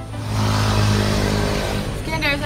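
A motor vehicle driving past: a low engine hum with road noise that swells and then eases off.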